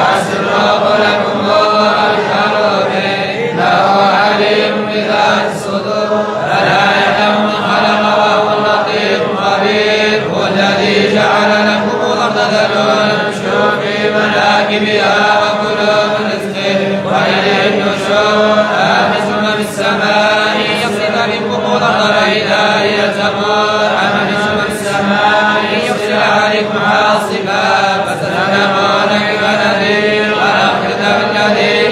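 A group of men reciting the Quran together in unison, in a continuous chanted style with no pauses.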